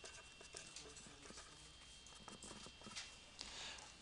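Near silence: room tone with faint scattered small ticks, and a soft felt-tip marker scratching on paper near the end.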